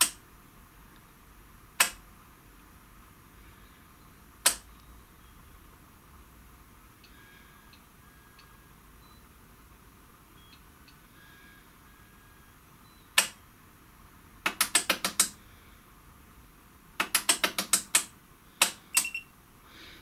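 Relays inside a Schlumberger Stabilock SI 4031 communication test set clicking as its self-check steps through the unit's circuits. Single sharp clicks come a few seconds apart, then fast runs of clicking follow in the last few seconds.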